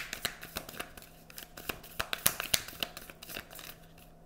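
Tarot deck being shuffled by hand: a rapid, uneven run of crisp card snaps and flicks, sharpest around the middle.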